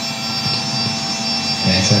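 A3 DTF printer running mid-print: the steady mechanical whir of its print-head carriage and motors. A man's voice comes in near the end.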